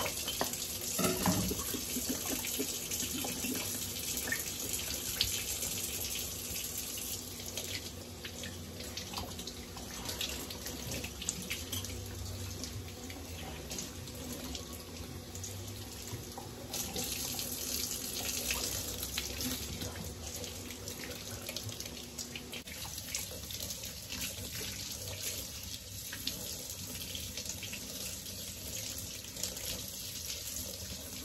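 Kitchen faucet running into a stainless steel sink while the parts of a red hummingbird feeder are rinsed and scrubbed by hand under the stream. A few clicks and knocks of the parts being handled come in the first couple of seconds.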